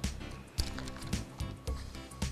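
Background music with a steady beat, about two beats a second.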